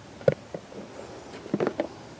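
Packaging being handled as a small cardboard camera box is opened: a sharp tick near the start, then a short run of light rustles and taps just past the middle.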